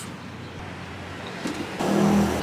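Steady outdoor background noise, a low hum like distant road traffic, with a small click partway through. A woman's voice starts up near the end.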